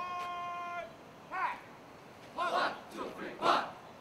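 Shouted drill commands on a parade ground: one long drawn-out call held on a steady pitch, then a string of short, sharp shouted calls, the loudest near the end.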